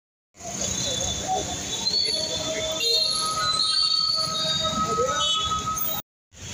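Busy street traffic with a steady roar, long high squealing tones held over it, and voices here and there.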